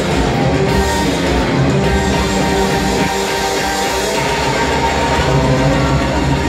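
Live rock band playing an instrumental passage with electric guitars, bass and drum kit, loud and steady, heard from the audience in the hall.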